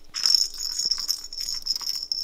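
Plastic ball-track cat toy being batted by a cat, the ball rattling around the circular track with a steady high jingling ring, starting a moment in.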